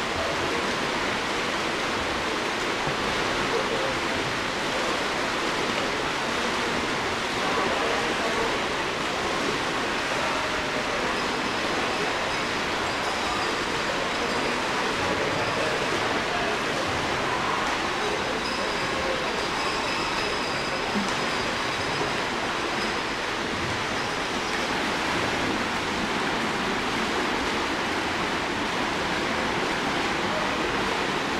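Steady, echoing wash of noise in an indoor swimming pool hall, from swimmers splashing through their lengths.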